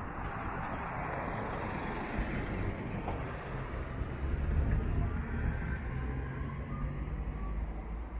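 Cars passing on an asphalt street. Tyre noise swells in the first couple of seconds, then a low engine rumble is loudest about halfway through.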